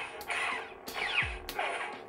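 Neopixel lightsaber sound board firing its clash effect three times in quick succession, about one strike every two-thirds of a second, each a sharp crackling hit with a falling tail. The blade's hum swoops in pitch between the strikes.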